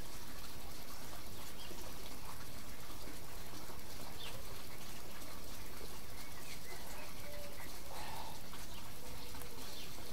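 Steady outdoor background hiss with a few faint, brief bird chirps.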